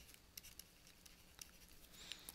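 Near silence with a few faint clicks from a stylus on a pen tablet as a word is handwritten.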